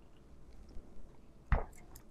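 Faint mouth and swallowing sounds after a sip from a can of sparkling water, then a short thump about one and a half seconds in.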